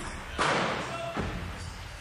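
Single gunshots fired inside a bare concrete room, each echoing off the walls: one sharp crack about half a second in, then a duller, deeper report just over a second in.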